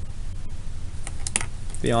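A pen writing on paper: a few short scratches and taps over a low steady hum. A man starts speaking near the end.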